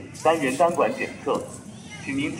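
A voice speaking a short recorded announcement that repeats in a loop, the same phrase over and over.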